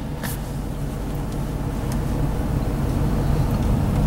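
The 2007 Mustang GT's V8 running at low revs, heard from inside the cabin, slowly getting louder as the car pulls away in reverse under light throttle. A single click comes about a third of a second in.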